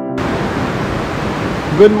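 Steady rushing of a rocky mountain stream, an even hiss that cuts in as organ music stops just after the start. A man's voice begins near the end.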